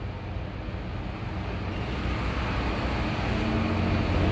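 Steady background rumble and hiss, like traffic noise, growing a little louder toward the end.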